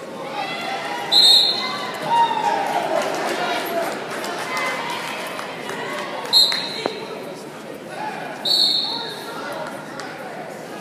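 A referee's whistle blown in three short, shrill blasts: about a second in, at about six seconds and at eight and a half seconds. Shouting voices run under the whistles, and a single thud comes shortly after the second blast.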